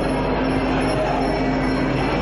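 Ringside Muay Thai sarama music: a reedy wind instrument (pi chawa) holding long notes that change in steps, over an even crowd noise.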